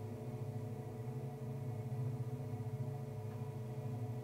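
Steady low hum with a few faint sustained tones above it: room tone in a large hall, with no speech.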